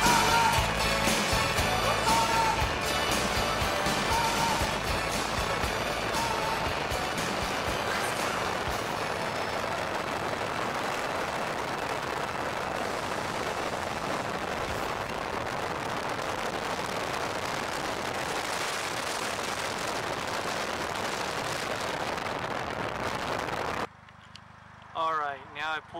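Background music with a steady beat fading out over the first ten seconds or so, giving way to a steady rush of wind and road noise from riding in an open Polaris Slingshot.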